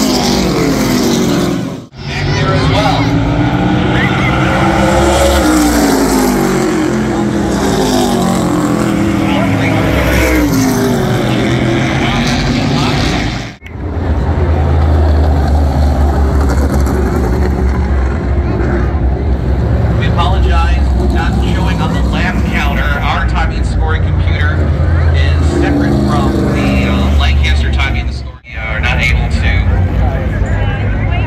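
Race car engines running on the track, their pitch rising and falling as the cars speed up and slow down, then a heavy, steady low rumble. The sound drops out abruptly three times where the recording cuts.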